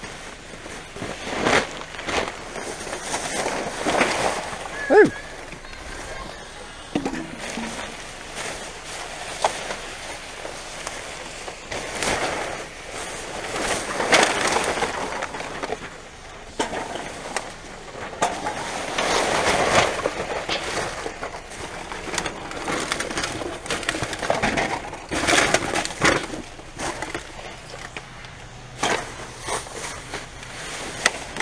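Plastic rubbish bags rustling and crinkling, with irregular scrapes and knocks of rubbish being shifted, as gloved hands dig through a full dumpster.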